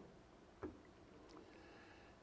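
Near silence: room tone in a pause, with one faint short click about two-thirds of a second in.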